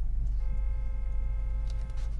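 Car engine idling, heard from inside the cabin as a steady low rumble. About half a second in, a steady whine starts and lasts about a second and a half: the dashboard CD player ejecting the disc.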